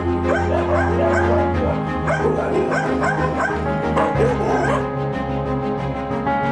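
Dogs yipping and whining in short repeated calls over steady background music; the calls stop about five seconds in.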